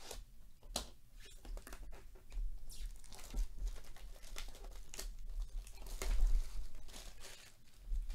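Plastic shrink wrap being torn and crinkled off a cardboard trading-card box, in irregular crackles, loudest about six seconds in.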